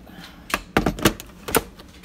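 A quick run of about five sharp clicks and knocks of hard plastic, starting about half a second in and over within about a second, as the Ninja blender's pitcher and lid are handled on its base.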